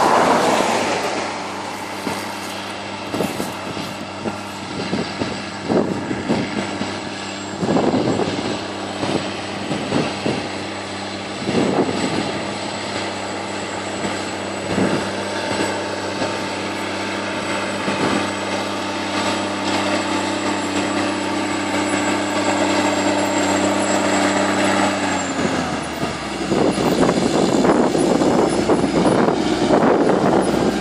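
Large articulated tractor's diesel engine running steadily under load, towing a disc harrow, with a thin high whine and occasional knocks from the implement. About 25 seconds in the engine note drops and a louder rattling, rushing noise of the harrow discs working the soil takes over as the rig passes close.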